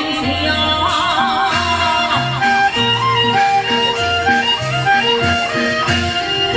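Taiwanese opera (gezaixi) music through a stage sound system: a voice singing with wide vibrato in short phrases over instrumental accompaniment with a repeating bass line.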